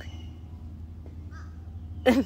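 Steady low outdoor background hum, with one short, faint bird call about a second and a half in.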